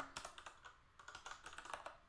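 Faint typing on a computer keyboard: an irregular run of light key clicks.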